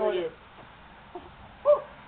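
The end of a man's word, then quiet outdoor ambience, and near the end a short, high-pitched vocal cry that rises and falls.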